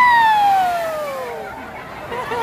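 A person's high-pitched whoop: a single voiced cry that jumps up sharply, then slides slowly down in pitch and fades over about a second and a half.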